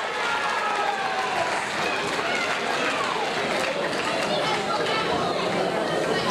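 Crowd noise in a hall: many voices talking and calling out at once, steady, with no single voice standing out.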